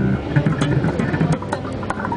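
Prat headless fan-fret 12-string electric bass played fingerstyle: a quick run of plucked notes.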